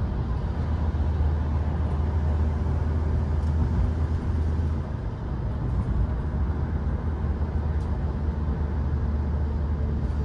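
Steady low drone of engine and tyre noise heard inside the cabin of a moving road vehicle.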